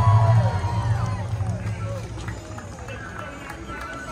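Soundtrack music of a nighttime castle projection and fireworks show dying away, its deep bass fading out, while spectators' voices carry on beneath it.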